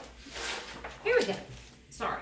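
Heavy pages of a large wallpaper sample book being turned, with a short rising-and-falling voiced sound about a second in.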